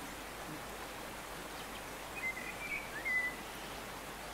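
Steady faint background hiss, with a few faint, short high chirps about two to three seconds in.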